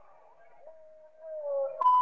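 Faint wavering sound that swells in the second half, then a short steady electronic beep near the end.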